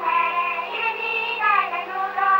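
High voices singing a Spanish song with musical accompaniment, heard through an old film soundtrack with a faint steady hum underneath.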